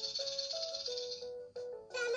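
VTech Shake It Bluey toy playing a simple electronic tune, with a maraca rattle over it for about the first second.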